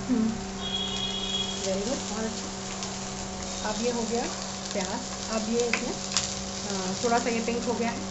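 Chopped onions sizzling in a little oil in a nonstick frying pan, stirred with a spatula that scrapes and taps against the pan.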